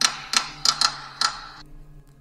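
A quick, irregular run of sharp clicks, about six in a second and a half, over a faint steady hum; the clicks stop about 1.6 seconds in.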